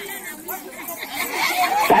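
Low chatter of a crowd of spectators, with no single voice standing out.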